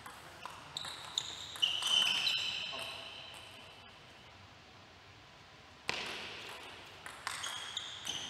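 Table tennis ball being hit back and forth in a rally, sharp clicks of paddle and table bounces in quick succession with a ringing tone after them in the first two seconds. A quieter pause follows, then a sharp hit about six seconds in and another quick run of clicks near the end.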